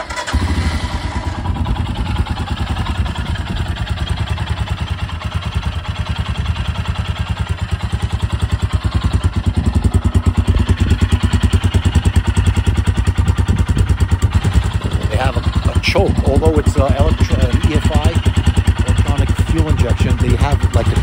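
Royal Enfield Himalayan's 411 cc single-cylinder engine is started and catches at once, then settles into a steady idle with an even, rapid beat of firing pulses. From about ten seconds in it is louder, heard close at the exhaust pipe.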